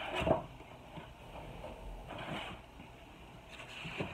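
Rummaging sounds: a light knock near the start, then faint rustling and a few small clicks as a cardboard box is picked up and handled.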